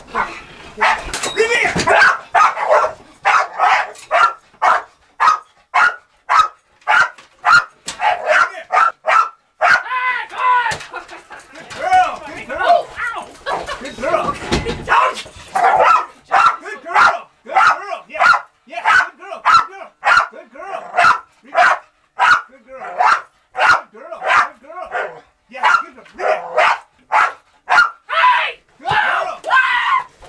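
Dog barking over and over at about two barks a second, with a few longer, wavering sounds about a third of the way in: the hold-and-bark of protection training, the dog keeping a helper with a bite sleeve at bay by barking instead of biting.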